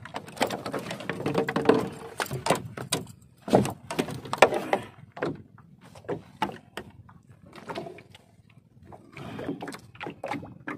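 Irregular knocks, taps and rubbing on a small boat as a fishing handline is hauled in hand over hand with a fish on it, the sharpest knocks coming about halfway through.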